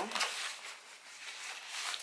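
Hook-and-loop (Velcro) fastener on a fabric portable changing pad being pulled open, with fabric rustling as the pad is handled; a rasping noise in a few uneven surges.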